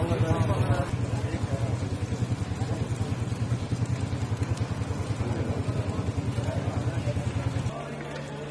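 An engine running steadily with a low, rapidly pulsing drone, under people's voices; it stops abruptly near the end.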